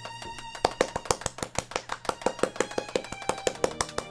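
Rapid hand clapping, about six sharp claps a second, starting just under a second in, over background music with held tones.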